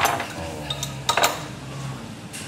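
Metal cutlery clinking against crockery: a few sharp clinks with a short ringing in the first second and a half, then quieter.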